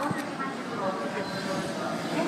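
Station platform sound beside a stopped JNR 485-series electric train: the train's steady running noise mixed with people talking, and a sharp click just after the start.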